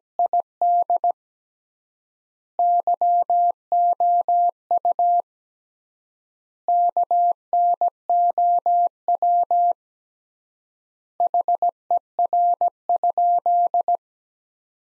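Morse code sent as a single-pitch keyed beep at 17 words per minute, spelling out the sentence "Did you know her" in four groups of dots and dashes, with a long pause between words (three times the standard word spacing).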